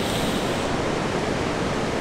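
Steady rushing noise of ocean surf breaking at the foot of high sea cliffs.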